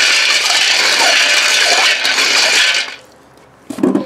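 A hand stirring powder-coated cast lead bullets around in a pan of water: loud, steady swishing and sloshing that stops about three seconds in, then a short knock near the end. The bullets are being stirred in the water they were quenched in to help them come apart.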